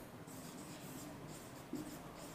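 A marker pen scratching faintly across a whiteboard as words are written.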